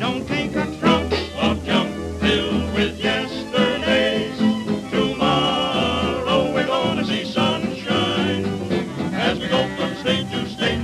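An early-1930s jazz dance band recording playing an instrumental passage with a steady swing beat and a pulsing bass line.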